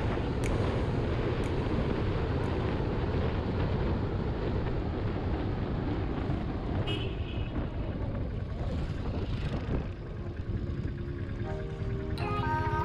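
Motorcycle engine running at road speed with wind rushing over the microphone, a short high beep about seven seconds in. Background music fades in near the end.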